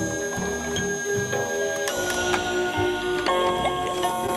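Fisher-Price Ocean Wonders Aquarium crib soother playing its second built-in lullaby through its small speaker: an electronic melody of held notes that change pitch every half second or so.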